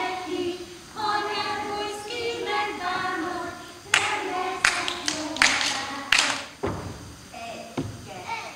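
A group of young children sings a Hungarian folk song together during a circle dance. About four seconds in, the singing gives way to several loud, sharp claps, irregularly spaced, with quieter singing between them.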